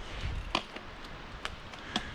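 Mountain bike rolling down a rough dirt trail: a low rumble of tyres and wind, with three sharp knocks and rattles from the bike, its suspension fork locked out and passing every bump.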